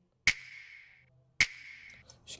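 Hip-hop clap sample played on its own through an EQ with an upper-mid boost, which makes the clap more present. Two sharp clap hits a little over a second apart, each with a short ringing tail.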